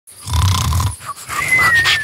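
Cartoon snoring from a sleeping character: a low rasping snore on the in-breath, then a thin whistle on the out-breath that slowly falls in pitch, with the next snore following.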